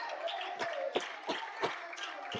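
A few scattered hand claps from a small congregation, four sharp claps at uneven spacing over faint voices in the room.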